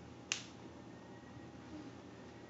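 A single sharp click about a third of a second in, over quiet room tone.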